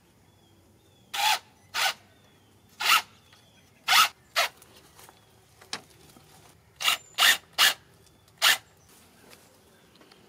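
About ten short, sharp rasping scrapes at irregular intervals, each well under half a second, from hands-on work putting up wooden trellises.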